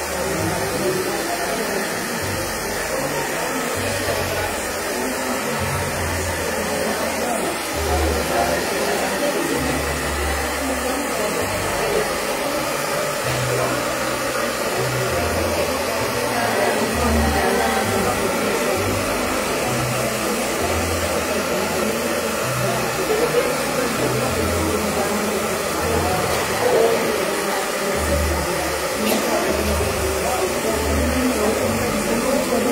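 Hand-held hair dryer running steadily, blowing onto wet watercolour paper to dry the paint.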